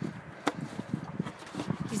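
Handling and movement noise close to the microphone: soft, irregular knocks and rustling of clothing, with one sharper click about half a second in.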